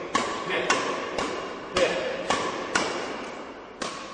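Badminton racket striking shuttlecocks in quick flat drives: a string of sharp cracks, about two a second, each with a short echo of a large hall.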